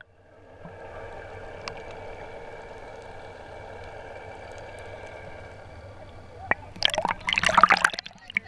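Muffled, steady hum of water heard with the camera's microphone held underwater in shallow sea, with a faint single click a little over a second in. Near the end come loud, irregular splashes and gurgles as the camera breaks the surface.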